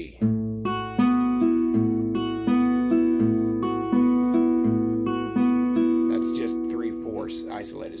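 Steel-string acoustic guitar fingerpicked slowly: a thumb-picked alternating bass line with pinched treble notes between, each note ringing on. This is the broken-down picking pattern for the IV chord.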